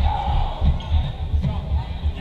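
A volleyball bouncing and thudding on a hardwood gym floor, echoing in the hall, under spectators' talk.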